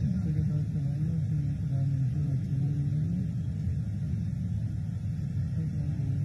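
The soundtrack of a film played through PA loudspeakers in a large tent. It is heard as a muffled, booming, low-pitched voice or tune over a rumble, with no words that can be made out.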